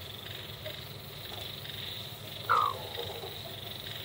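A bantam hen gives one short call about two and a half seconds in, over a steady high-pitched background drone.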